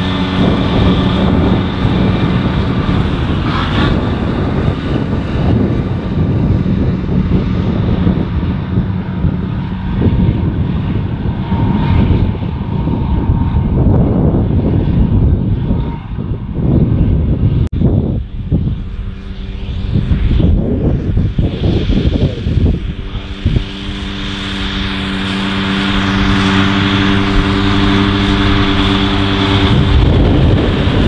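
John Deere tractors' diesel engines running steadily at working revs while pulling trailed mowers through grass. In the last few seconds a tractor comes closer and its engine note grows louder and clearer.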